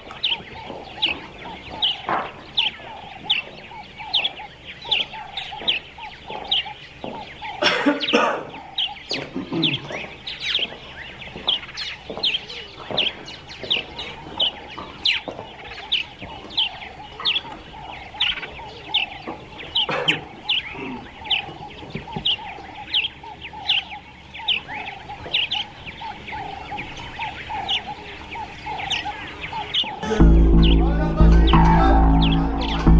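Birds chirping steadily, a short high falling chirp about two or three times a second, with a couple of louder, rougher calls or noises about a quarter and two-thirds of the way in.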